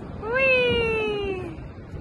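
A toddler's voice giving one long, loud call that rises quickly, then slides slowly down in pitch for just over a second.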